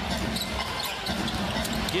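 Basketball being dribbled on a hardwood arena court, with a steady arena crowd murmur underneath.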